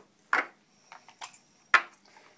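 Two sharp snaps about a second and a half apart, the second louder, with a few faint ticks between: the metal spring clips of a VW distributor cap being released as the cap is popped off.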